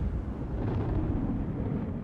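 Low rumbling sound effect under an animated logo sting, dying away near the end.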